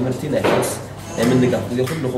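A man talking in short phrases with brief pauses between them.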